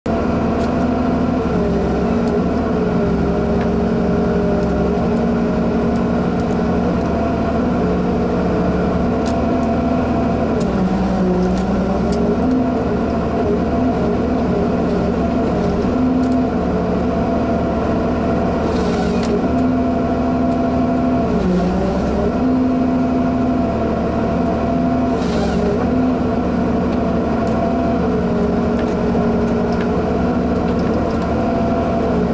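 Ponsse Ergo harvester's diesel engine and hydraulics running steadily, heard from inside the cab. The engine note sags and recovers twice under hydraulic load as the crane and harvester head work. There are two short hisses in the later part.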